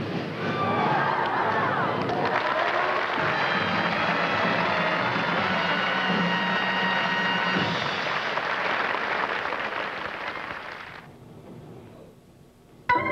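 Audience applause with band music playing under it, fading out about eleven seconds in.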